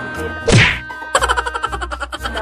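An editor's comic sound effect over background music. A sharp whack-like swoosh comes about half a second in, sweeping down in pitch. It is followed by a fast, fluttering run of pitched pulses, about eight a second, to the end.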